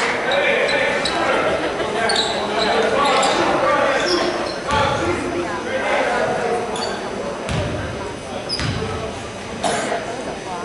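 A basketball bouncing a few times on a hardwood gym floor in the second half, as a player dribbles before a free throw. Crowd voices carry on throughout, echoing in a large gymnasium.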